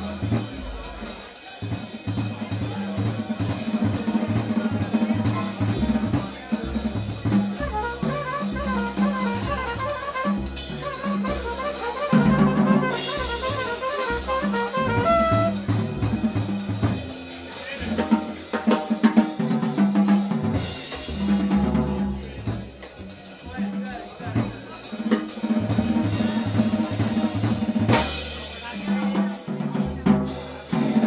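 Live small-group jazz: drum kit with snare and cymbals and a walking upright bass keep time throughout, with a horn playing a melodic line through the middle stretch.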